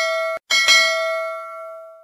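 A bell ringing with several clear tones. The first ring is cut off abruptly, then the bell is struck twice in quick succession and left to ring out, fading away.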